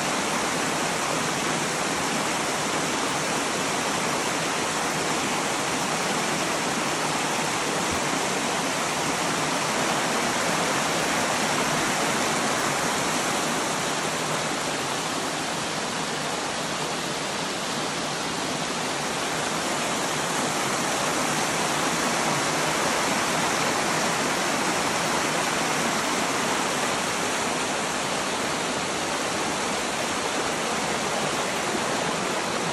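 Creek water rushing over rock ledges in small whitewater cascades: a steady, even rush.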